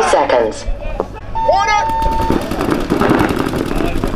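Players shouting, then a steady electronic start horn sounding for about a second, a second and a half in. Right after it, many paintball markers open fire at once, rapid overlapping shots going on without a break.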